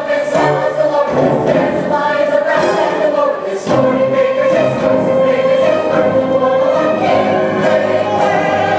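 A stage-musical ensemble singing in chorus over instrumental accompaniment, loud and continuous.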